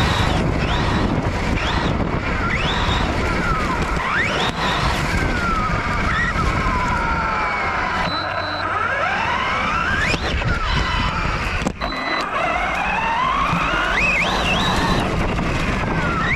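Brushless electric motor of a Losi Lasernut U4 RC truck whining in several sweeps that rise and fall in pitch as the throttle is worked. Underneath runs a constant low rumble from the truck bouncing over rough grass.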